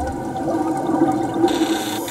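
Underwater rushing and bubbling water with a steady hum of held tones under it, lasting about two seconds.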